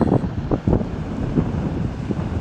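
Wind buffeting the microphone in uneven gusts, a low rumble.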